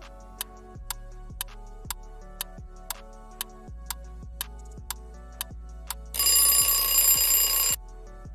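Quiz countdown-timer sound effect: clock ticks about two a second over background music, then a loud ringing alarm for about a second and a half near the end as the timer runs out.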